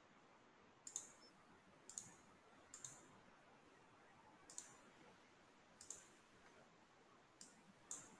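Faint computer mouse clicks, about seven at irregular intervals, some in quick pairs, over quiet room tone.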